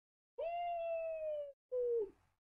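A woman's closed-mouth 'mm' of sympathy, held about a second and falling slightly in pitch, then a second, shorter and lower one near the end.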